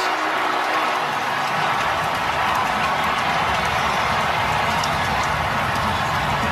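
Stadium crowd cheering steadily after a touchdown.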